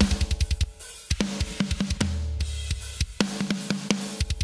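Recorded metal drums played back from a parallel-compression bus: fast runs of kick-drum strokes with snare and cymbals. The SSL bus compressor is switched in on the bus partway through, set for heavy gain reduction at a 10:1 ratio with a 30 ms attack and the fastest release, for an aggressive pumping, punchy sound.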